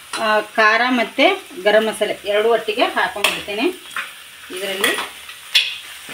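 Chopped onion and tomato frying in oil in a pan, stirred and scraped with a steel spoon as spice powders are added, with a few sharp clicks of the spoon on the pan. A person's voice talks over it for most of the time, pausing about two thirds of the way through.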